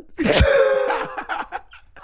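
A woman and a man laughing together: one loud burst of laughter starting just after the start that trails off after about a second and a half.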